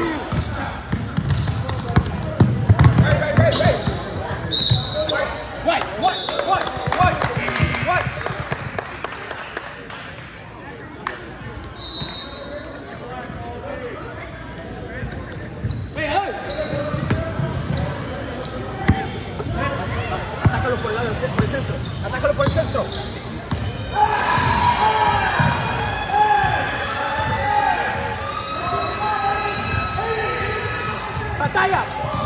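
A basketball bouncing on a hardwood gym floor during play, with voices calling out and echoing in the hall.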